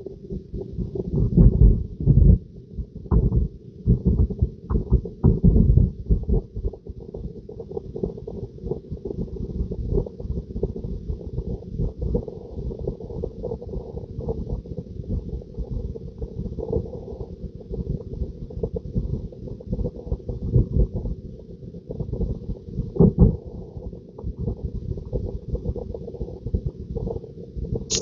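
Low road and tyre rumble inside the cabin of a moving Tesla Model 3, with irregular low thumps throughout and a steady hum underneath.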